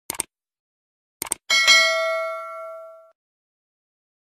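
Subscribe-button animation sound effect: two quick clicks, two more about a second later, then a single notification bell ding that rings out and fades over about a second and a half.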